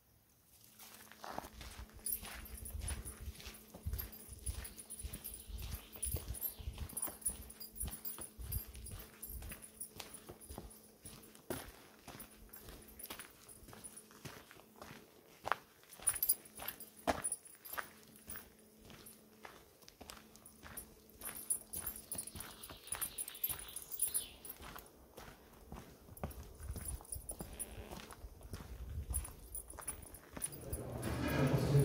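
Footsteps on a dirt forest path, with a steady run of small clicks and low thumps from walking with a handheld camera.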